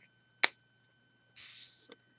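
Hands handling small plastic LEGO pieces: one sharp click about half a second in, then a short soft rustle and a light tick near the end.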